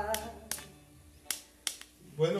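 The last note of a song on an electronic keyboard dies away, leaving a low tone that fades out. A few sharp isolated clicks follow in the otherwise quiet tail.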